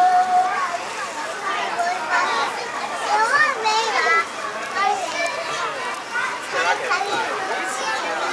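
Children's voices chattering and calling over one another in a playground, with no clear words; one voice holds a note for about half a second at the start.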